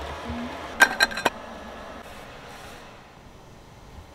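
A screwdriver and a metal table bracket being handled on a wooden table top: a quick run of sharp metallic clicks about a second in, then only a faint hiss.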